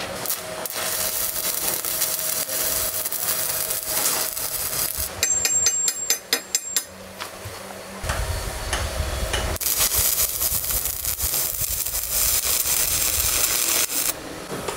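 Stick (electrode) welding arc crackling and hissing steadily while weld is laid into deep pits in a metal tube. A quick run of sharp clicks comes about five to seven seconds in.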